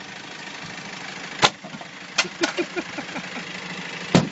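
Two sharp knocks of blows against a car's body, the louder about a second and a half in, a lighter one near two seconds, over a steady idling engine.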